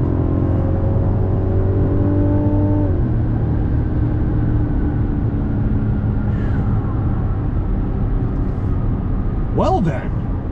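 The Mazda CX-90 Turbo S's 3.3-litre turbocharged inline-six, heard from inside the cabin under hard acceleration in sport mode, its pitch climbing steadily. The eight-speed automatic upshifts about three seconds in, dropping the pitch, and the engine climbs again before fading after about seven seconds.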